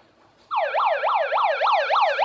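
Handheld megaphone's built-in siren switched on about half a second in, giving a fast electronic warble that sweeps up and down about five times a second.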